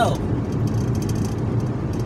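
Steady low road and engine noise inside a moving car's cabin.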